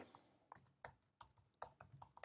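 Faint keystrokes on a computer keyboard: about seven light, irregularly spaced key taps as a short word is typed.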